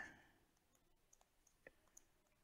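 Near silence with a few faint, short clicks of a stylus tapping on a tablet screen while writing numbers by hand.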